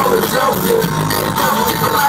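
Loud live hip hop music from a band with drum kit and electric guitars, playing without a pause through the concert sound system and heard from among the crowd.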